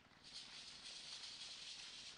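Faint applause from a seated audience, a steady patter of hand claps that starts about a quarter second in.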